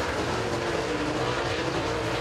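Dirt super late model race car V8 engines running at speed around the track: a steady drone whose pitch wavers slightly.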